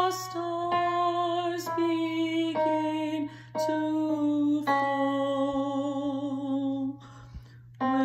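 A woman singing a slow alto line in held notes with vibrato, stepping down in pitch, over an electric (MIDI) keyboard piano accompaniment. There are short breaks for breath about three seconds in and again near the end.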